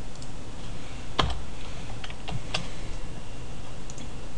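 A handful of scattered clicks and taps from a computer mouse and keyboard, the loudest about a second in, over a steady background hiss.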